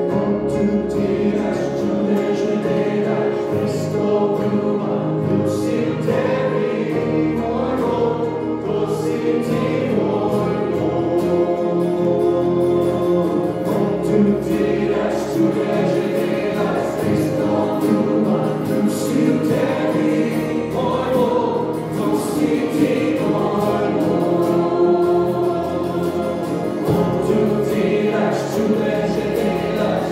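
A Slovenian worship song sung by a small group of men's and women's voices, accompanied by two strummed acoustic guitars and an electric keyboard, playing steadily without a break.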